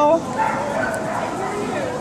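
Dog whimpering, with a few faint high-pitched whines over background noise.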